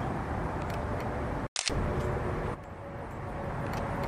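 Steady outdoor background noise, briefly cut off about one and a half seconds in where the recording breaks and restarts, then a little quieter about a second later.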